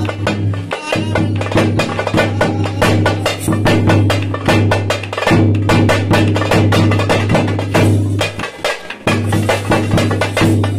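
Tamil thappattam drumming: thappu (parai) frame drums beaten in a fast, driving rhythm over the booming strokes of a large stick-beaten bass drum.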